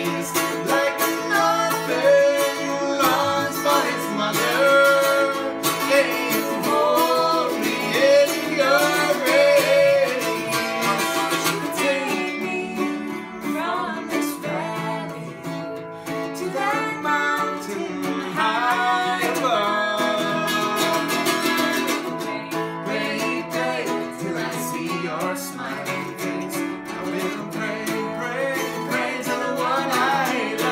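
A man and a woman singing a duet in harmony over a strummed teardrop-bodied acoustic string instrument of the mandolin family.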